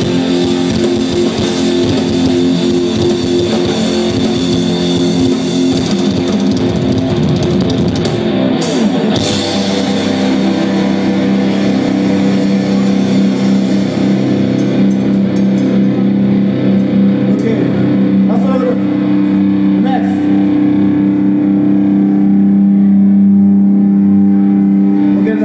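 A live rock band with electric guitars playing loudly. From about ten seconds in, a chord is held and rings on steadily.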